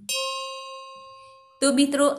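A bell struck once, ringing with a clear pitch and several higher overtones and fading away over about a second and a half.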